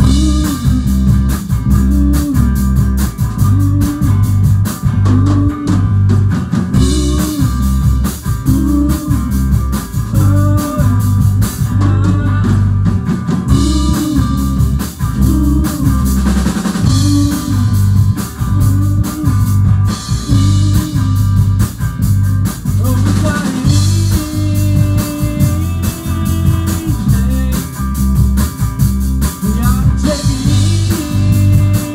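Rock band playing live: electric guitar, electric bass and drum kit, with a repeating bass riff over a steady drum beat.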